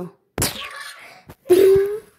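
A sudden whack-like hit about half a second in, then a short, loud, steady wailing cry from a child's voice near the end, as in play-fighting with a plush toy.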